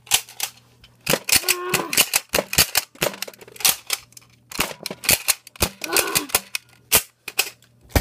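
Nerf blaster fire, with foam darts hitting Lego bricks: a rapid, irregular run of sharp clicks and smacks, several per second, with brief pauses.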